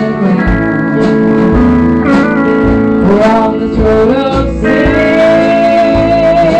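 Country band playing with no words sung: a pedal steel guitar slides between long held notes, settling on one sustained note in the last second or so, over guitar, bass and a drum beat of about one hit a second.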